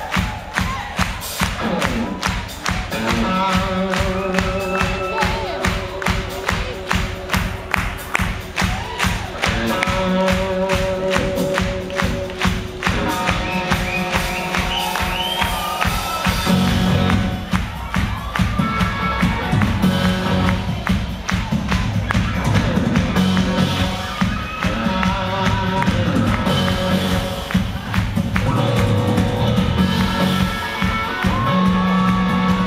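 Live rock band playing: electric guitar and keyboards over a steady drum beat, with the band filling out and growing a little louder about halfway through.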